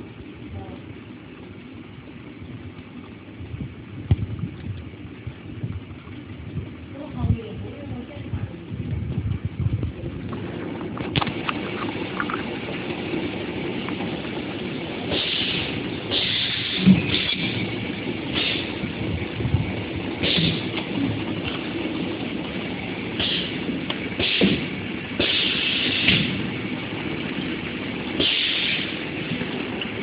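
Automatic liquid-soap filling machine running, its pump loud and steady, growing louder about a third of the way in. From about halfway on, repeated short hisses of air come from its pneumatic cylinders.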